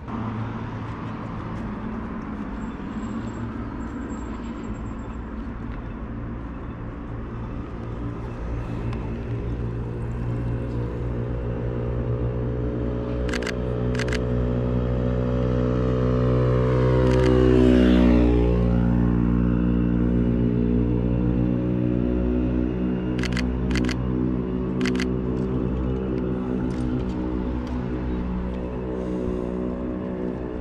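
Steady low city-street rumble with a sustained droning tone. A vehicle passes close, loudest about two-thirds of the way through. Short camera shutter clicks come in twos and threes around the middle and again near the end.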